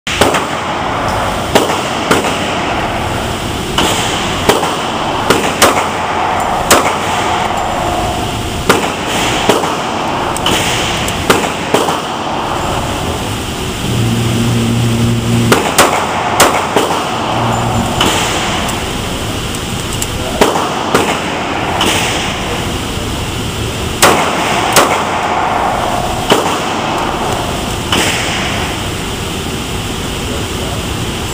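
Pistol shots on an indoor range, including a ParaOrdnance P-10 subcompact .45, about two dozen sharp reports at irregular intervals, each echoing briefly off the concrete. A short low hum sounds about halfway through.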